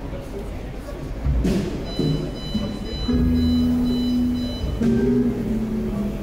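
Jazz trio of hollow-body electric guitar, upright double bass and drum kit starting a tune over crowd voices: a drum hit about a second in, then held low notes from the bass and guitar.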